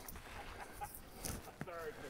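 Faint footsteps of hikers on a rocky trail strewn with dry leaves: a few soft scuffs and crunches.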